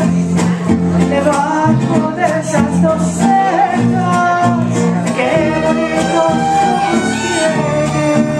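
Live mariachi band playing, with violins over strummed guitars and a moving bass line, and a woman singing with them.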